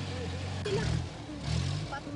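Truck engine running with a steady low hum while people's voices talk over it, with two brief rattles about a second apart.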